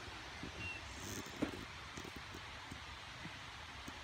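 Quiet woodland background with faint rustling and a few soft ticks, and one short click about one and a half seconds in.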